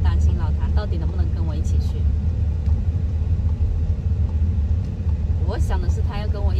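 Steady low rumble of a moving Volkswagen heard from inside its cabin, with a woman's voice over it near the start and again near the end.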